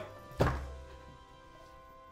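A short musical sting at a segment change: a deep bass hit about half a second in, followed by ringing tones that fade away.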